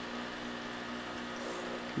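Steady low hum from a small electric motor, with a few faint steady tones over a soft hiss and no change in pitch or level.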